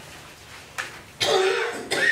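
A person coughing once, loudly, a little over a second in, after a short sharp sound.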